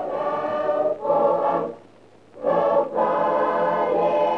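A choir singing long, held notes, breaking off briefly about two seconds in and then resuming.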